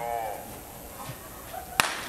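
A starter's pistol fired once near the end: a single sharp crack that sends the sprinters off in a 100 m race.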